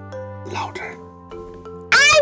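Background music of soft held notes, with a child's voice answering faintly about half a second in.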